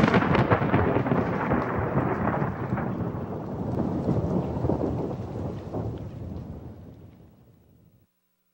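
A sudden thunderclap, then rolling, crackling thunder that fades out over the last few seconds.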